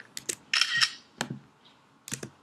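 A Mac screenshot camera-shutter sound effect, a short shutter burst about half a second in, preceded by a few small clicks.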